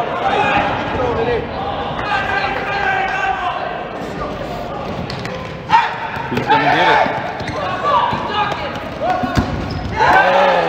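Dodgeballs bouncing and smacking on a gym court under players' voices calling out, as a dodgeball game gets under way. One sharp ball impact, a little past halfway, is the loudest sound.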